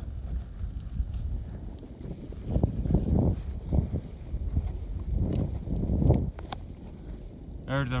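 Wind buffeting a phone microphone: a steady low rumble with stronger gusts about two and a half seconds in and again around five to six seconds.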